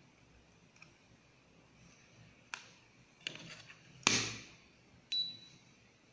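Plastic clicks and snaps from a DVP-740 fibre fusion splicer as its fibre clamps and hinged cover are closed: four separate clicks, the loudest about four seconds in. The last click, near the end, is followed by a brief high beep.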